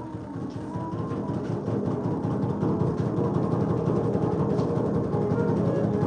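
A live drum roll on a large drum, fast and dense, swelling steadily louder. A bamboo flute (bansuri) plays a slow, stepping melody over it, fading back after the first second or so.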